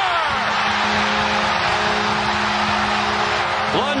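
An arena crowd cheering a home-team goal, with the goal horn sounding a steady chord over it. The horn starts just after the beginning and stops near the end.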